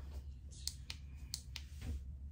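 Four small clicks in two quick pairs: a fingertip pressing the buttons on the control panel of a Bluetooth sleep-headband headphone, over a low steady hum.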